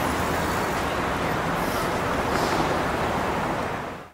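City street traffic noise: a steady hum of passing cars.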